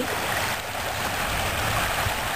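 Small waves washing in over sand at the shoreline, a steady wash of water.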